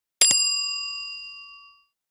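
Bell-ding sound effect: a sharp click, then a single bell strike that rings and fades out over about a second and a half.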